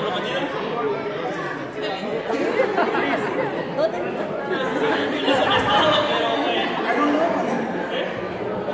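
Many young people's voices talking at once in a large hall: steady, overlapping chatter with no single voice standing out.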